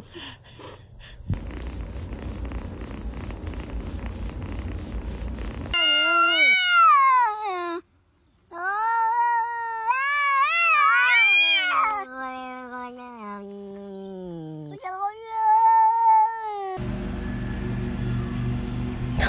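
A cat meowing loudly in a series of long, drawn-out meows and yowls that bend up and down in pitch, one sliding low before a last shorter meow. Before the meowing, a few seconds of steady rushing noise.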